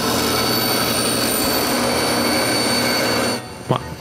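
Bandsaw cutting through a pine plaque board: a steady run with a high whine over it, breaking off about three and a half seconds in.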